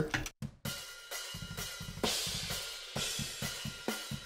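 Overhead mics of the GGD Invasion sampled metal drum kit played back soloed, with their EQ and compressor bypassed: cymbal wash over a run of kick and drum hits. Without the processing the hits are short and lose their sustain.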